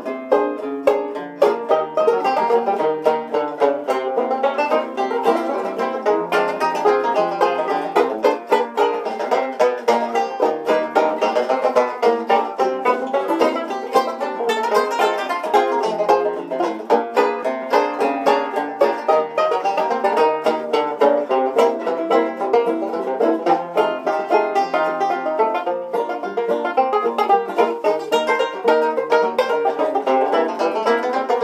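Three banjos playing a ragtime piece together in classic-banjo fingerstyle, a dense, unbroken stream of plucked notes.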